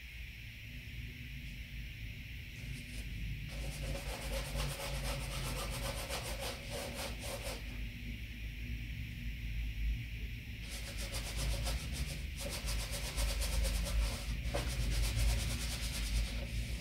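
Bristle brush rubbing oil paint onto a stretched canvas: rapid, scratchy strokes in two spells, starting a few seconds in, pausing briefly midway, then resuming.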